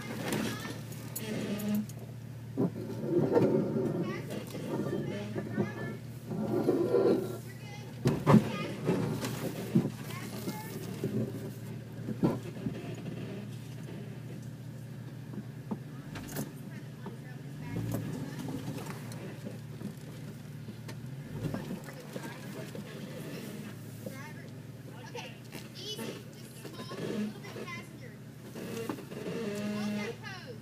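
Off-road vehicle engine running low and steady while crawling over a rocky trail, with a few knocks and bumps and indistinct voices outside.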